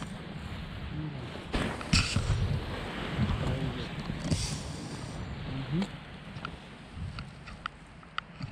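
Handling and rustling noise from a hand-held camera on a selfie stick, with faint, indistinct voices in the first part and a few light clicks in the last two seconds.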